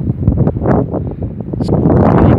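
Wind buffeting the phone's microphone: a loud, uneven rumble.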